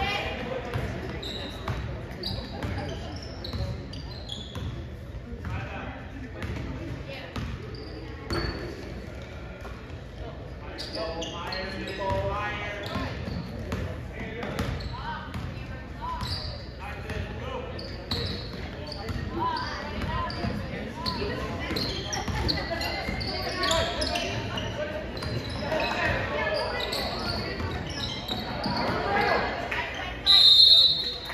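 A basketball dribbled and bouncing on a hardwood gym floor during play, with brief sneaker squeaks. Voices chatter and echo around the large hall.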